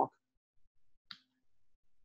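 A pause between words, near silent apart from one brief, faint click about a second in.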